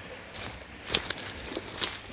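Footsteps crunching through dry leaf litter and twigs on a forest floor, with two sharper steps about a second apart.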